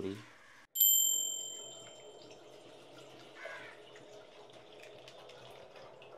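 A single sudden bright metallic ring, a few clear high tones that fade away over about a second and a half, followed by a faint steady low hum.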